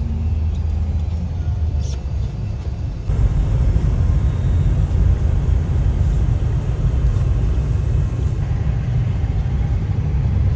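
Steady low rumble of a small Dacia car's engine and tyres on the road, heard from inside the cabin. It gets somewhat louder about three seconds in.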